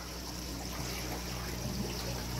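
Steady trickle of water from a pool pond's pump-fed filter draining back into the pool, over the low steady hum of the pump.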